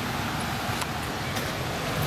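A vehicle engine running steadily at idle, a low even rumble under outdoor background noise.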